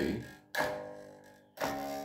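Electric bass guitar playing two plucked notes of a riff on G, about a second apart, each ringing out and fading.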